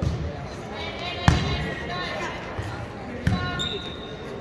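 Volleyball being struck during a rally: two sharp hits, the louder about a second in and another two seconds later, with players' and spectators' voices in a large gym.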